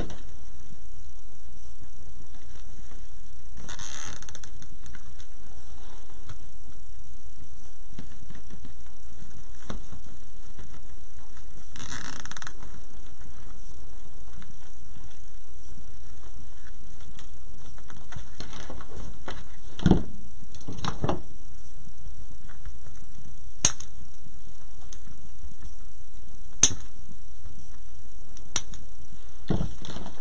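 Hands working a deco mesh wreath: faint handling and rustling of the mesh over a steady background hiss, with a few short sharp clicks in the second half.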